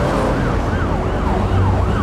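Emergency-vehicle siren in a fast yelp, its pitch sweeping up and down about three times a second, over a low steady rumble of traffic.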